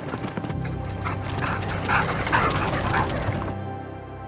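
A team of harnessed sled dogs barking and yipping in a run of short calls, over background music.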